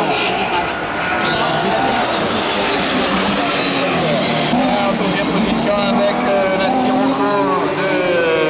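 Super 1600 rallycross car engine running hard around the circuit, its note rising and falling as it revs through the gears.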